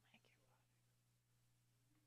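Near silence: a faint steady electrical hum, with a soft click and a brief faint breathy voice sound at the very start.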